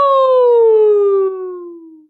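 A woman singing one long "ooo" vowel in a "slide whistle voice", sliding smoothly and steadily down in pitch as a vocal exploration glide, then fading out at the end.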